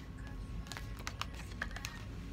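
Paper cards being handled and laid down on a cloth-covered surface: a quick series of light clicks and taps, most of them in the second half.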